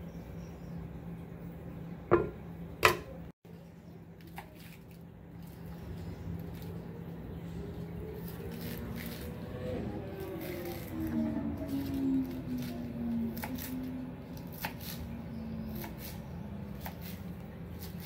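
Two sharp knocks about two seconds in, then a kitchen knife chopping iceberg lettuce on a plastic cutting board in a series of light chops through the second half. A faint low tone slides slowly downward in the background.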